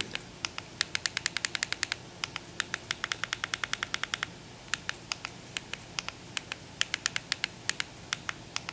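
Rapid series of short, sharp clicks, several a second in quick runs with brief pauses, as the highlight is stepped key by key across an on-screen keyboard with a remote control to spell out a web address.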